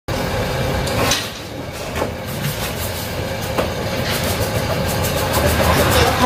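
Busy market ambience: a steady din with a few short clacks.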